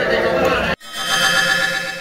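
Voices and chatter of people in a room, cut off abruptly less than a second in, followed by a short music sting: a held chord that swells and then slowly fades away.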